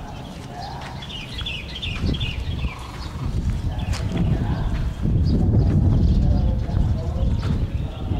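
Outdoor ambience: low rumbling noise on the microphone builds from about two seconds in and is loudest between five and seven seconds. Small birds chirp in quick clusters in the first second or so.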